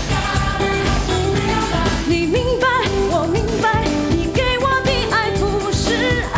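Mandopop song: a woman sings with vibrato over a backing track with a steady beat.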